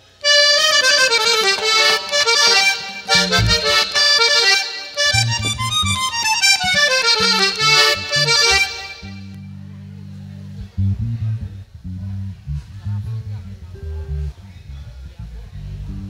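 Button accordion playing a fast vallenato introduction, runs of notes falling and then rising, for about nine seconds. Then the accordion stops and a bass line plays on its own.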